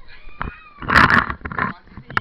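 A person's loud, harsh growling roar close to the microphone, in a long burst about a second in and a shorter one right after, over children's voices in the background.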